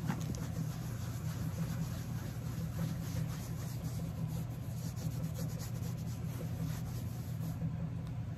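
A damp wipe with saddle soap rubbed in circles over a handbag's coated canvas, a run of faint, irregular swishing strokes, over a steady low hum.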